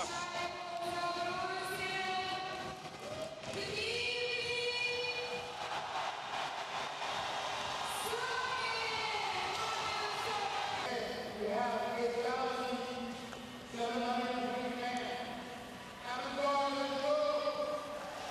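Hockey arena crowd singing a chant in unison, long held notes stepping from one to the next, in celebration of a home goal that has just tied the game.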